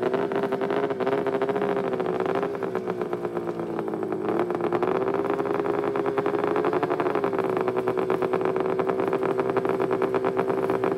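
A race snowmobile engine holds a steady fast idle while the sled is staged at the drag start line. Its pitch dips and recovers slightly a few times.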